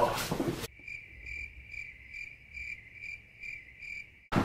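Cricket chirping, about two evenly spaced chirps a second, cutting in abruptly under a second in after a brief burst of noise, with all other sound gone: a cricket sound effect dubbed over the picture.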